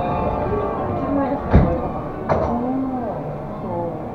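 Monorail doors shutting: two sharp thumps, about a second and a half in and again under a second later. Music and voices carry on underneath.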